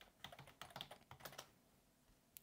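Faint typing on a computer keyboard: a quick run of keystrokes that stops about a second and a half in, as a password is entered.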